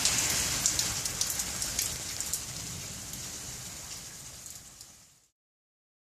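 Thunderstorm rain falling on a hard wet surface as a steady hiss, with scattered sharp drops ticking. It fades gradually and stops about five seconds in.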